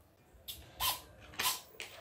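Battery being plugged into a mini foam RC jet: about four short, sharp clicks and rustles of the connector and plastic airframe being handled, with brief buzzes from the plane's small servos as its gyro stabiliser powers up and twitches the control surfaces.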